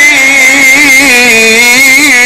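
Qur'an recitation in the melodic tajweed style: a man's voice holding one long melismatic note at the end of a verse, wavering in small ornamental turns.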